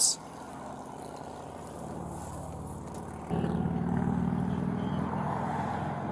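Road traffic noise, then from about three seconds in a steady low engine hum, as of a vehicle idling close by, which starts abruptly.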